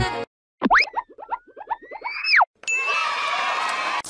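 Cartoon sound effects: a springy boing with a fast run of short rising notes and a whistle-like tone sliding up and back down, then, after a brief silence, a shimmering magical sparkle that holds for about a second and a half as new characters pop into the scene.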